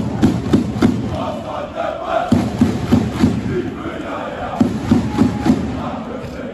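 Large crowd of FC København football supporters chanting in unison, loud, with a quick regular beat running through the chant and short lulls between phrases.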